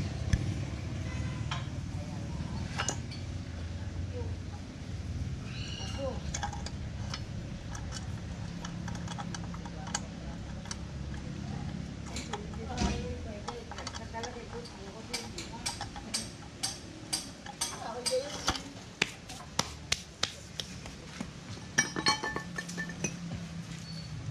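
Light metal clinks and clicks from small steel parts of a hydrovac brake booster being handled and fitted by hand, coming in a quick irregular run in the last third, over a low steady background hum.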